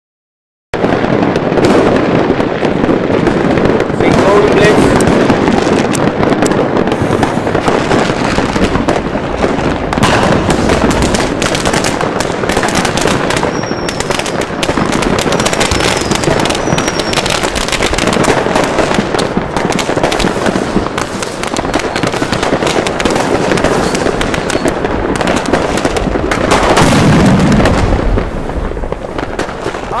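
Fireworks and firecrackers going off in a dense, unbroken barrage of bangs and crackling, with a few short falling whistles around the middle; it thins out near the end.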